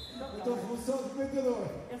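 Indistinct male voice talking, with no other clear sound.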